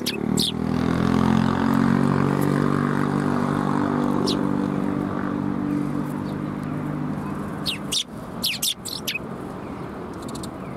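A motor vehicle engine drones for most of the clip, dipping slightly in pitch at first and fading out about eight seconds in. Eurasian tree sparrows chirp briefly at the start, once midway, and in a quick series near the end.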